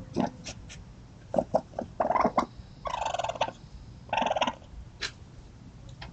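Raccoon kits calling: a run of short chirps, then two longer buzzy, trilling calls about three and four seconds in, and one more short chirp near the end.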